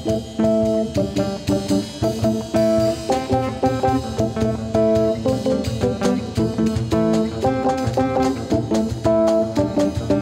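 Live band playing: acoustic-electric guitar, keyboard synthesizer, electric bass and hand percussion, with a steady repeating note pattern and regular percussive strikes.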